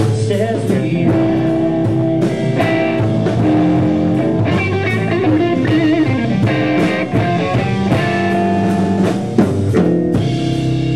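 Live rock band playing an instrumental passage: electric guitar over bass guitar and drums.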